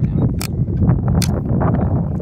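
Wind buffeting a phone's microphone as a steady low rumble, with two sharp clicks, about half a second and a second and a quarter in, as 3D-printed plastic rocket parts are pulled apart and handled.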